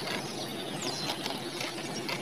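Faint rustling and small clicks of a nylon gill net being worked through by hand, over a steady background hiss. A bird gives one short, falling whistle about a second in.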